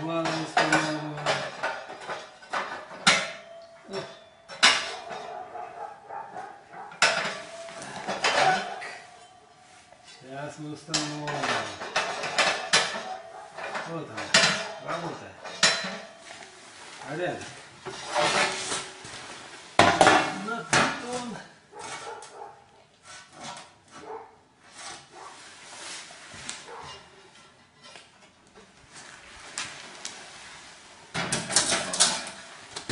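Metal stove parts clanking and knocking irregularly as the stove is assembled by hand, with many separate sharp metallic strikes.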